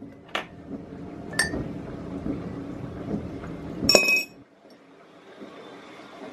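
Ceramic tea mug clinking: a couple of light knocks, then about four seconds in a louder, ringing clink.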